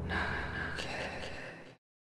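Breathy, hissing sound effect with a faint steady high tone, fading away and then cutting off to silence about three-quarters of the way through.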